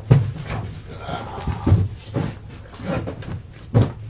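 A string of soft knocks and bumps, about six in four seconds, from things being handled and set down, with faint talking behind them.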